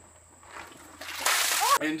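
A bucket of ice water dumped over a man's head, splashing onto him and the ground. The splash comes about a second in and lasts under a second.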